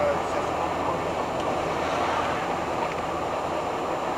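Steady engine and road noise heard inside the cab of a 1985 Fiat Ducato-based Hobby 600 motorhome cruising at about 74 km/h.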